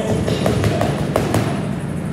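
Boxing gloves smacking against focus mitts in a quick series of punches, over background music.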